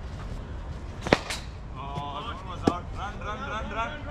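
A cricket ball struck by a bat with a sharp crack about a second in, followed by a second, fainter sharp knock about a second and a half later.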